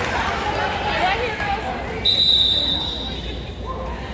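Referee's whistle: one long, steady blast starting about halfway through, over spectators' chatter in the gym. It calls a timeout.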